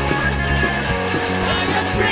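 Studio-recorded punk rock song playing, an instrumental stretch without vocals, with a bass line stepping between notes under the band.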